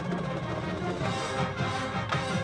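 Marching band playing a brass-led passage over drums, the brass getting brighter about a second in.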